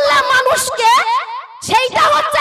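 Only speech: a woman making an impassioned speech in Bengali into a microphone, with a brief pause about one and a half seconds in.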